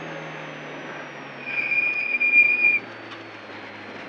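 Nissan 240SX rally car heard from inside the cabin: engine and road noise, the engine note easing slightly lower, through a slippery corner. In the middle a single high, steady squeal sounds for about a second and a half, then stops.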